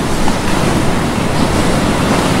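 Rushing water noise like surf and churning spray, swelling in and then holding steady and loud.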